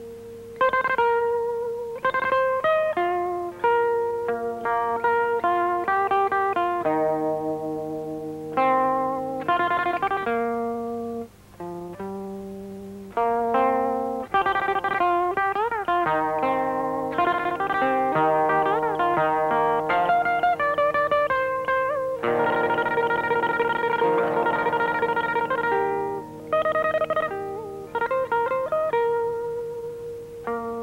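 Electromagnetic (pickup-equipped) pipa played solo: a melody of single plucked, ringing notes and short runs, with notes bent up and back down about halfway through. About two-thirds in comes a stretch of fast tremolo picking.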